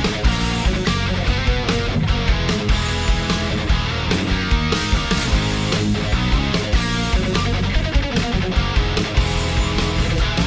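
Heavy metal backing track with a steady drum beat, with distorted electric guitar played over it on a Tokai Stratocaster-style guitar through a Marshall JCM800 amp.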